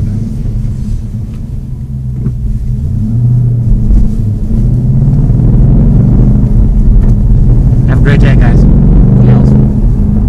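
2013 Ford Mustang Boss 302's 5.0 L V8 running under way, heard from inside the cabin, with the TracKey track calibration enabled. It grows louder about three seconds in and stays loud.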